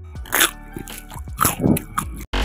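Crisp deep-fried potato snacks crunching as they are bitten or broken: several sharp crunches, the first about half a second in and a quick cluster near the end, over soft background music.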